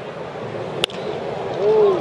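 Sharp crack of a baseball bat hitting a pitched ball about a second in, over the steady murmur of a ballpark crowd. A single voice calls out near the end, the loudest moment.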